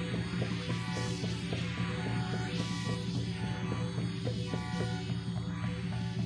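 Synthesizer patch playing in iZotope Iris 2, a hybrid synth-sampler built around a spectral filter: a steady low drone under a busy pattern of short notes, with a hissing swell that rises and falls about every two seconds.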